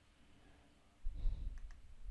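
Two quick computer mouse clicks, close together, about a second and a half in. They come just after a low thump, the loudest sound here.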